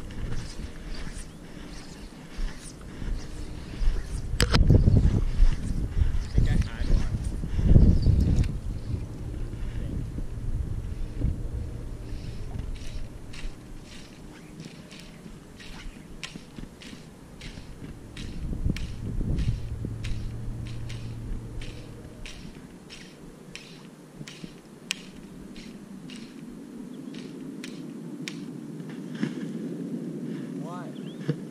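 Wind buffeting the microphone over open water, in a few strong low gusts in the first third and a weaker one past the middle. Through the second half comes a run of quick light clicks, a few a second.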